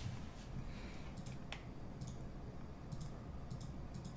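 Faint, scattered short clicks, about six in four seconds, over a low steady room hum.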